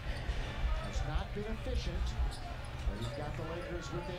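A basketball being dribbled on a hardwood court, a run of steady bounces over low arena crowd noise.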